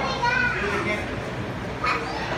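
A young child's high voice in the first second, over the steady murmur of a crowded indoor hall, with a short sharp click near the end.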